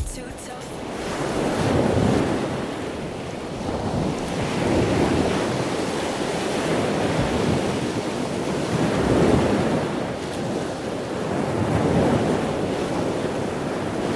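Ocean surf: a rushing wash of waves that swells and ebbs about every three to four seconds.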